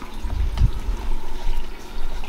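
Water trickling and splashing in a saltwater reef aquarium's circulation, a steady running-water sound. A low rumble from the handheld camera being moved about runs under it, strongest in the first second.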